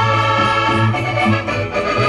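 Live Portuguese Minho folk dance music led by accordion, sustained chords over a bass note that pulses with the dance beat.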